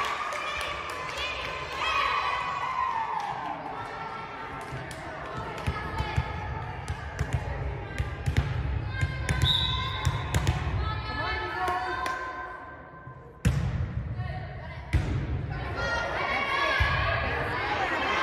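Volleyball rally: sharp smacks of the ball being served, struck and hitting the hardwood floor, the two loudest about a second and a half apart near the end, over constant chatter and calls from players and spectators.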